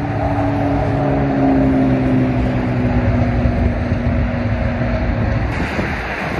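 Steady freeway traffic noise with a low engine drone running through it; the drone slowly falls in pitch and fades out near the end.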